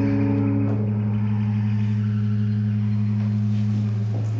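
A keyboard holds one low organ-like note with its overtones. The higher overtones drop out about a second in, and only the lowest part is left near the end.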